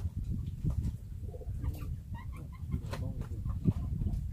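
A few short bird calls, like fowl clucking, about two to three seconds in, over a steady low rumble.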